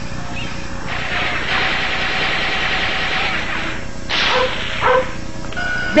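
Cartoon soundtrack effects: a hissing noise lasting about three seconds, then a shorter burst of hiss and a few brief blips, over a steady low background.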